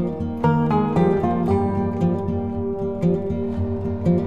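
Background music of plucked string notes, a gentle melody over a steady low bass.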